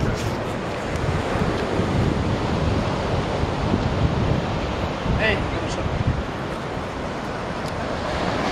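Wind buffeting the microphone over a steady rush of surf and moving water.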